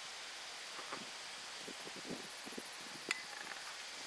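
Beer being poured from a drinking glass back into a glass beer bottle: faint trickling and glugging over a steady background hiss, with one sharp glass clink about three seconds in.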